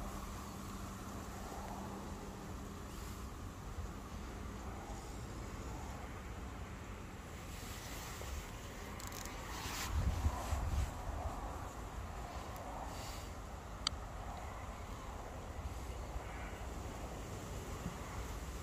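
Wind rumbling on the microphone, gusting harder about ten seconds in, with a steady low buzz for the first few seconds and a single sharp click near the end.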